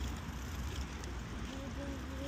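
Wind buffeting the microphone of a camera worn by a moving cyclist: a steady low rumble with an even hiss, with a faint voice near the end.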